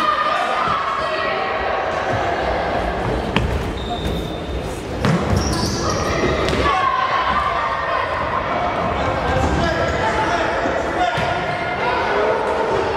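Futsal ball being kicked and bouncing on the hard floor of an echoing sports hall, with a sharp kick about three and a half seconds in. Shouting voices run through it all.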